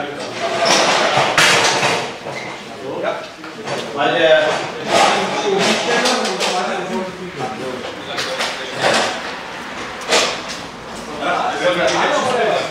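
Several people talking in the open, with a few short knocks and bangs among the voices.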